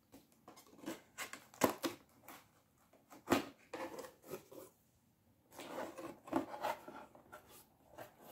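Cardboard box being opened by hand: the packing tape slit and the flaps pulled open, a string of short scrapes and knocks with a sharper one a few seconds in, then a stretch of cardboard and paper rustling as the contents are reached.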